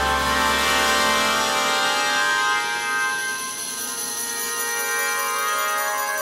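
Orchestral music rendered by NotePerformer sample playback: dense sustained chords across the orchestra, with a low bass note that drops out about a second and a half in.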